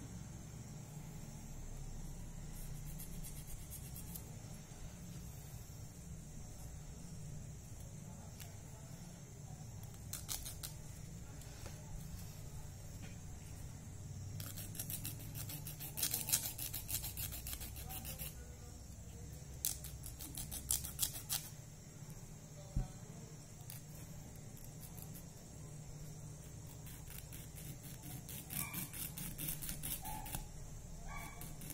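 A nail file rasping across a fingernail in quick back-and-forth strokes, coming in several bursts of a few seconds each, over a steady low hum.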